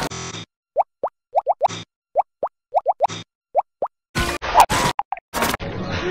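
Spliced fragments of cartoon sound effects: about a dozen short upward-sliding blips, each separated by silence, followed about four seconds in by a dense, choppy jumble of clipped music and effect snippets with abrupt cuts between them.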